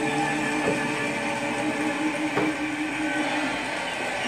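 A long held orchestral chord closing a song, fading out shortly before the end, with a couple of faint taps over it.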